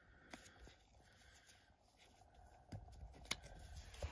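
Near silence in a small room, with a few faint short clicks of paper card being handled.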